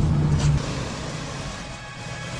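Low rumble of a moving car that cuts off abruptly about half a second in, leaving a fainter hiss.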